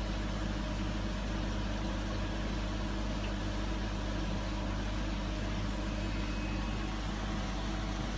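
Steady low hum of running machinery or electrical equipment, even in level with no change.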